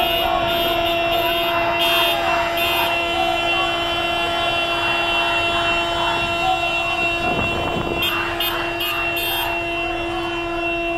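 Car horn held down in one long, unbroken blast at a steady pitch, over the voices of a passing crowd.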